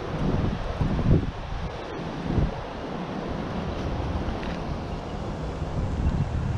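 Wind blowing across the microphone: a steady rushing noise with a few stronger low rumbling gusts in the first half.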